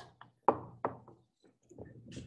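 A quick run of about five knocks and taps, the loudest about half a second in, followed near the end by a softer low rustle.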